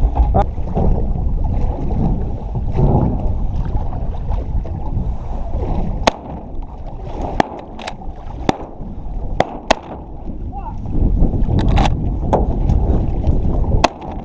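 Shotgun fire from a layout boat: about ten sharp cracks, scattered from about six seconds in, with the last just before the end. Underneath is a steady rumble of wind on the microphone and lake water against the hull.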